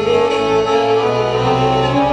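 Violin and piano accordion playing a tune together, the bowed violin holding sustained notes over the accordion.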